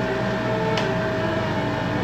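A steady machine-like hum holding a few fixed pitches, with one faint click a little under a second in.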